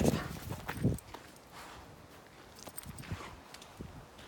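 A dog's paws stepping and shuffling on gravelly dirt close to the microphone: a few louder knocks and rustles in the first second, then faint scattered steps.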